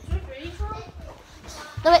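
Children talking at home: faint, broken speech, then a louder spoken word near the end, with low bumps from a handheld phone being moved.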